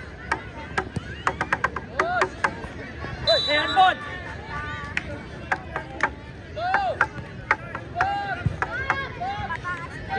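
Short shouts and calls from young football players and spectators, with many sharp clicks and knocks scattered throughout.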